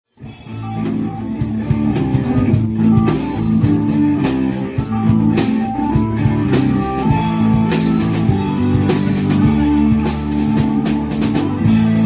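Live rock band playing an instrumental intro: electric guitar, bass guitar and drum kit, fading in at the very start.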